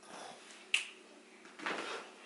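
A single sharp click a little under a second in, then a short soft rustle near the end, over a faint steady hum.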